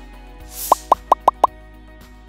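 Motion-graphics sound effects: a short whoosh, then five quick pops about a fifth of a second apart, each rising slightly in pitch. Steady background music plays underneath.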